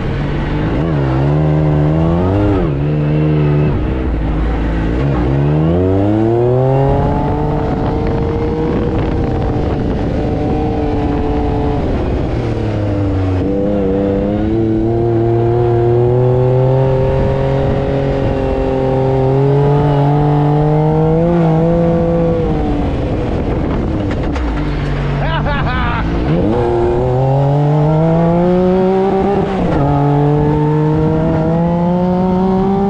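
Side-by-side UTV engine heard from the cockpit while driving over sand dunes, the revs rising and falling with the throttle: it climbs steeply a few seconds in, holds steady for long stretches, dips twice, and climbs hard again near the end.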